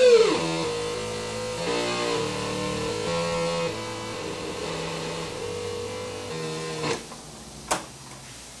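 Circuit-bent Talk & Learn Alphabet talking toy making glitched electronic tones: a loud held tone plunges in pitch at the start, then a looping pattern of buzzy held notes steps between low and mid pitches. Near the end a click and then a sharp zap, after which the sound drops much quieter.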